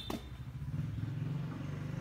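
A low, steady engine rumble with a fast, even pulse, after a brief click at the very start.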